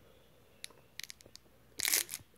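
A few faint clicks, then a short crinkling rustle near the end.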